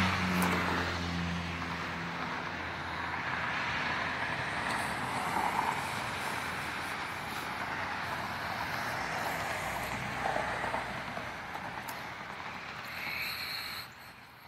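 Road traffic: a vehicle's engine hum fades over the first couple of seconds, then a steady rush of traffic on the road dies down near the end.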